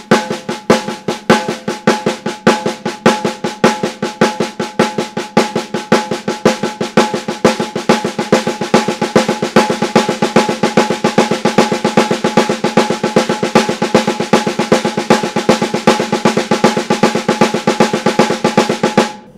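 Snare drum played with two sticks in continuous, even triplet strokes, a rapid steady stream of hits with the drum ringing underneath. This is a triplet-sticking drill for shuffle timing.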